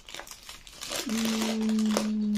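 Paper wrapping around a potted flowering plant crinkling as it is pulled back by hand. About a second in, a woman's long, steady, closed-mouth hum comes in over it.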